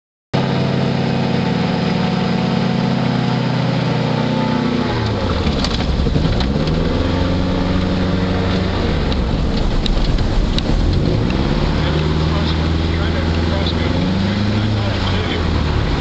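Sparrowhawk gyroplane's engine and propeller heard from the open cockpit, running steadily at first. About five seconds in the pitch drops, then swings down and back up several more times as the throttle is worked during the roll on the runway.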